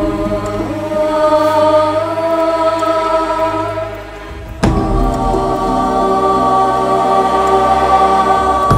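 Film background score: long, held, choir-like tones that swell slowly, with a new phrase coming in sharply a little past halfway.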